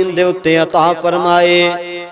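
A man's voice preaching in a melodic, chant-like delivery through a microphone, drawing out long sung phrases with brief breaks between them.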